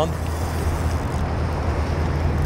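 Steady outdoor noise of wind rumbling on the microphone over the rush of a fast river current, with no reel or line sounds standing out.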